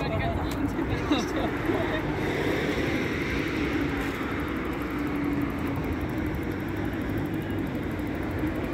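Steady city traffic noise, vehicles running past, with people's voices in the first couple of seconds.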